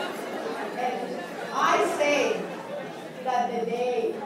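Speech only: voices talking and chattering in a large hall.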